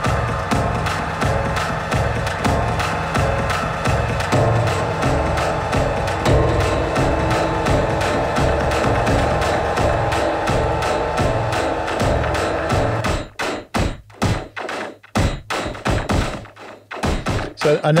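Sampled cinematic loops played from the Loop Pool Boom & Bust Kontakt instrument: first a dense, continuous loop heavy in the bass, then, about thirteen seconds in, a sparse percussive click loop of separate sharp hits with short gaps between them.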